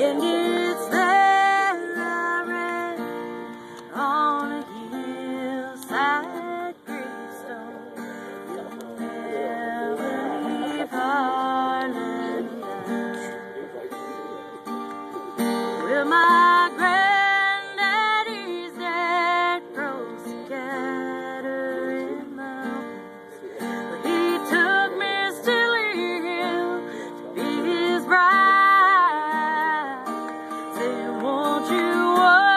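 Acoustic-electric guitar strummed in chords, with a voice singing a slow melody over it and holding some long notes.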